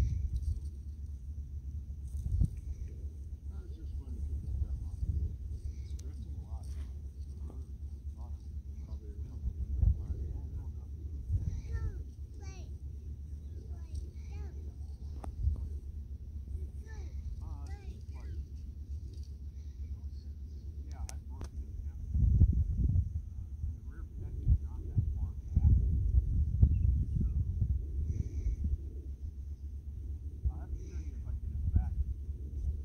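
Wind rumbling and buffeting on the microphone, gusting harder about three quarters of the way through, with faint distant voices and a thin, steady high-pitched whine.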